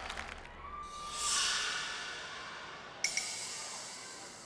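A soft swish of noise swells about a second in and fades away over the next two seconds, over faint background music; a brief click comes near the end.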